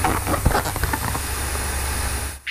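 Steady rushing hiss over a low motor hum, with a few short handling sounds of balloon rubber in the first second.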